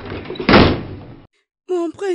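A heavy thud with a short decaying tail about half a second in, the loudest thing heard; the sound cuts off abruptly, and a person's voice begins speaking near the end.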